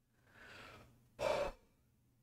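A man's gasp: a soft breath drawn in for under a second, then a shorter, louder breath pushed out.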